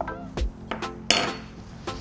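A spoon clinking and knocking against small ingredient bowls, several light strikes with a brief scrape about a second in, over soft background music.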